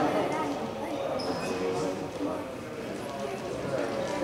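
Indistinct voices echoing in a sports hall, with a basketball bouncing on the wooden court.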